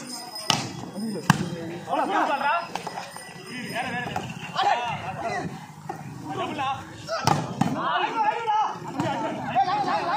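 A volleyball being struck by hand during a rally: sharp smacks, the loudest about a second in and another about seven seconds in, over shouting voices of players and spectators.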